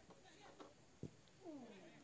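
Faint high calls, the clearest one sliding down in pitch near the end, with a single sharp thud about a second in, over near-silent ambience.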